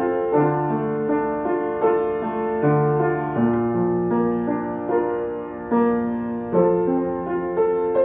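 Upright piano played solo as a song accompaniment, with no voice: slow, gentle broken chords over held bass notes, the harmony changing every second or so.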